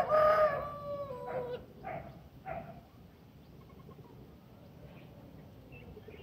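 A rooster crowing: one long call held for about a second and a half that steps down in pitch near its end, followed by two short calls about two seconds in.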